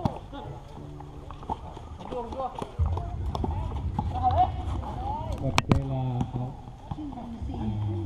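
Players' voices calling out during a basketball game, with a basketball bouncing on the hard court in scattered knocks. One loud sharp knock comes about five and a half seconds in.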